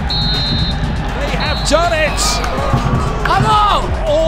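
Referee's whistle: one short shrill blast, then men's voices shouting from about a second and a half in, over background music.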